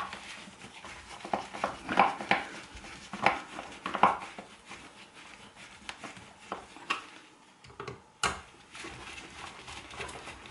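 Irregular clicks and knocks of hard plastic shower-unit parts being handled and pushed into place, with several louder knocks in the first half and another sharp one near the end.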